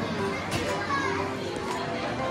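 Busy shop ambience: background music with voices of other people in the room.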